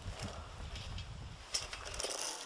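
Low wind rumble on the microphone, with a few faint clicks and one sharper click about one and a half seconds in.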